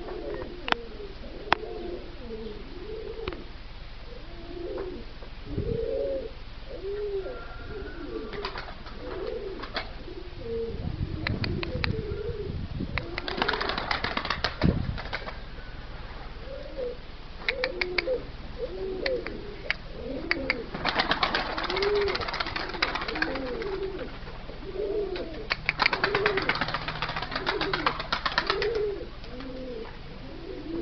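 Domestic tumbler pigeons cooing over and over in short, low, rolling calls. Three bursts of rapid wing flapping come at about 13, 21 and 26 seconds in.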